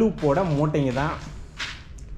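A person's voice speaking for about the first second, then a short hiss near the end.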